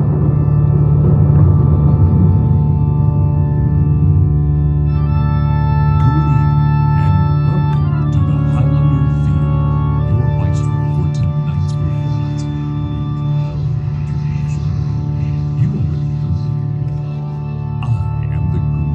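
Sustained organ-sounding chords from a marching band's front-ensemble keyboards, played through the field speakers, with a higher melody of held notes entering about five seconds in.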